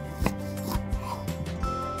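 Background music, with a few short knocks of a chef's knife cutting through boiled beef onto a wooden cutting board, the sharpest about a quarter second in.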